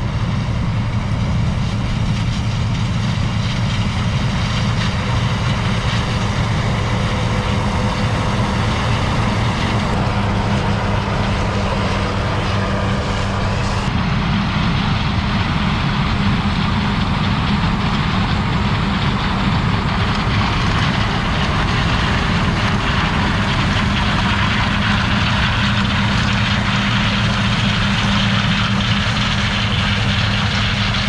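John Deere combine harvesting corn: its diesel engine runs steadily under load, with a steady hum of threshing and harvesting machinery. The sound shifts slightly about ten and fourteen seconds in.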